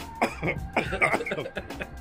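A man coughing and clearing his throat in several short bursts, a reaction to very spicy chicken.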